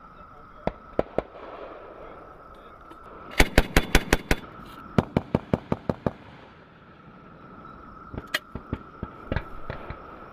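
Machine gun firing in bursts: three shots about a second in, a rapid burst of about seven rounds a little past three seconds, a burst of about six around five seconds, and scattered shots near the end. A steady high tone runs underneath.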